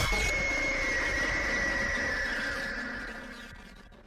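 A sustained sound that starts abruptly, with a high held tone sinking slightly in pitch over a hiss, fading out over about four seconds.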